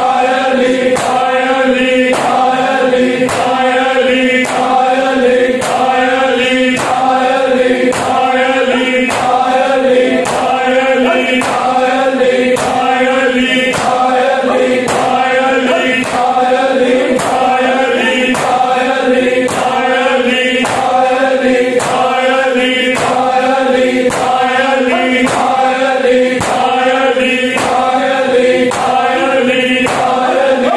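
A group of men chanting a Punjabi noha in unison while beating their chests with open hands in matam. The sharp slaps keep a steady, even beat under the singing.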